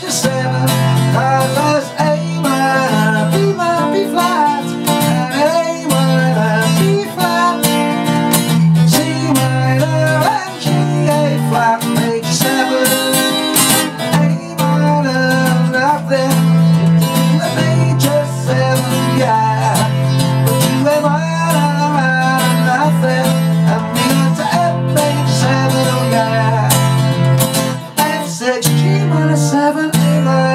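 Acoustic guitar strummed through a chord progression, with a man singing along to it.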